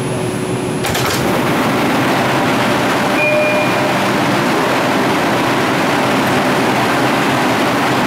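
An R142 subway train standing in the station: about a second in the sound changes suddenly, consistent with the car doors opening. A loud, steady rush of train and station noise follows, with a short tone around three seconds in.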